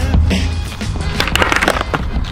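Background music with a steady bass line. In the second half come a quick run of sharp clacks: a skateboard tail popping and the board clattering on concrete during a kickflip attempt.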